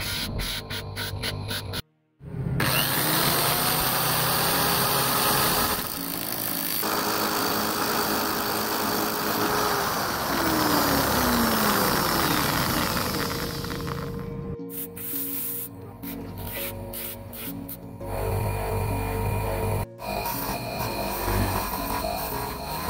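Electric power tools running while a steel ring is sanded and polished on spinning abrasive wheels, mixed with background music. A sudden brief silence comes about two seconds in, and near the middle the motor's whine falls in pitch as it slows.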